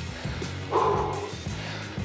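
Background music with steady low held notes. About a second in comes a short breathy groan from the cyclist, out of breath on a steep climb.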